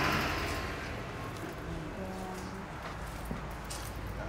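Faint voices over a low, steady background hum.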